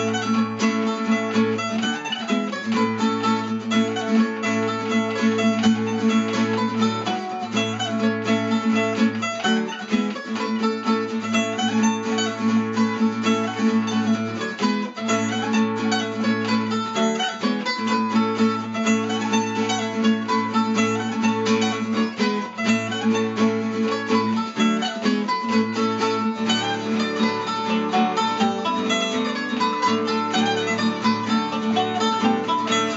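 Bowl-back mandolin playing the melody of an Irish polka over acoustic guitar accompaniment, in a steady, even dance rhythm.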